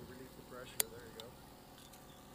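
Faint voices in the background, with one sharp click a little under a second in.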